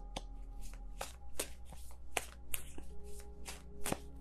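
Tarot deck being shuffled by hand: a run of irregular sharp card clicks, two or three a second.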